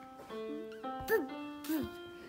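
Electronic keyboard playing a simple melody in held single notes, with a dog whining along twice in short rising-and-falling cries, about a second in and near the end.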